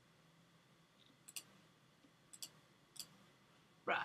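Faint computer mouse button clicks, a few single and some in quick pairs, over quiet room tone, with a louder, fuller thump near the end.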